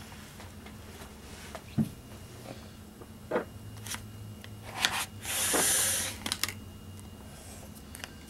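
A scraper dragged once across a metal nail-stamping plate to wipe off the excess black polish, a scrape lasting about a second, a little past halfway. Light taps and clicks come before and after it.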